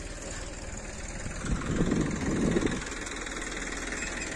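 An old Massey Ferguson tractor's engine runs steadily while driving the hydraulic pump of a homemade loader. The sound grows louder for about a second in the middle, then settles back.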